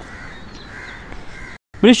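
A crow cawing twice in the background with harsh, hoarse calls. The sound then cuts out for a moment just before a man's voice starts near the end.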